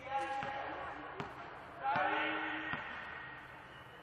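Volleyball bounced on the gym floor twice, sharp single knocks about a second apart, with players calling out in an echoing sports hall.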